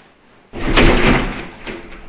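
A person crashing bodily into a mirror: one loud bang about half a second in, then about a second of rattling that dies away.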